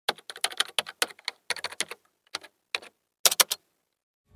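Typing on a computer keyboard: a quick, irregular run of key clicks with short pauses between groups, the loudest cluster near the end.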